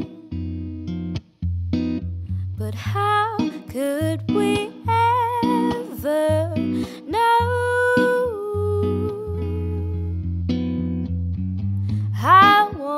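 Jazz electric guitar playing, with a woman's wordless singing or humming sliding and wavering over it from a couple of seconds in until past the middle.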